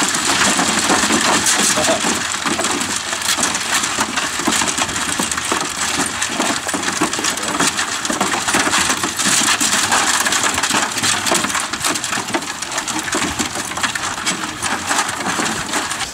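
A dozen kelpies eating dry kibble off a metal ute tray: a dense, continuous crunching and clatter of many dogs chewing kibble and pushing it across the tray.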